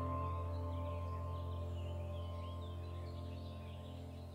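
Soft ambient background music: held notes slowly fading, with faint bird-like chirps above them.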